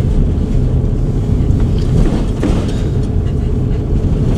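Van driving along at low speed, heard from inside the cab: a steady low rumble of engine and road noise.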